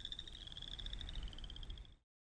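A frog's rapid, high-pitched pulsed trill, faint, dropping slightly in pitch about a second in and fading out at the end.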